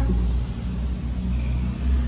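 Low, steady rumble of a motor vehicle's engine, with a faint hum of engine tones above it.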